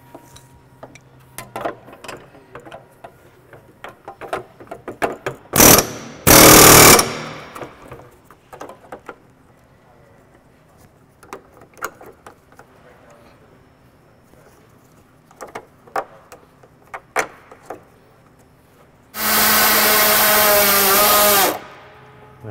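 Scattered clicks and knocks of hand tools on the engine's fan and shroud, with two short loud bursts about six seconds in. Near the end a power drill runs steadily for about two and a half seconds, driving a self-tapping screw.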